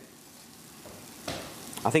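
Chopped onion, garlic and ginger frying gently in a pan: a soft, even sizzle that grows a little louder over the last second as the spices go in.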